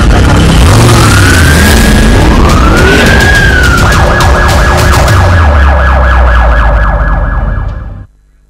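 Police siren sound effect over a heavy, deep rumble: a siren wail rising and falling during the first few seconds, then switching to a fast warbling yelp about halfway through. Everything drops away abruptly just before the end.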